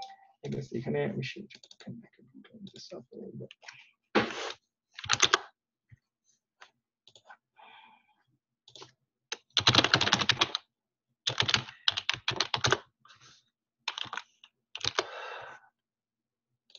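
Computer keyboard typing in quick bursts of rapid keystrokes separated by short pauses.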